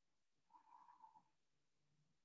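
Near silence: room tone, with one faint brief sound about half a second in, lasting under a second.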